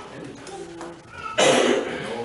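A single loud cough about one and a half seconds in, over faint murmured speech.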